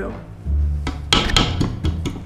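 Quick knocks and scrapes of a utensil against a stand mixer's stainless-steel bowl, a dense run starting about a second in.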